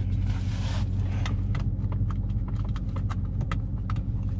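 Dodge Charger Scat Pack's 6.4-litre HEMI V8 idling steadily, heard from inside the cabin. Over it come a series of light clicks and taps as the seatbelt and its padded shoulder cover are handled.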